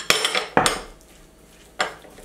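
Utensil scraping and clinking against a glass mixing bowl while a chunky chickpea salad is stirred, a quick run of knocks and scrapes in the first half-second, then one more clink near the end.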